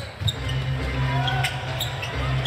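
Court sound of a live basketball game: a few sharp knocks of the ball and players on the hardwood, over a steady low arena hum.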